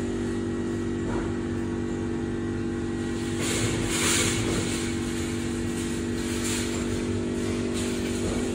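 A steady machine hum made of several constant tones, with a short hiss about three and a half seconds in.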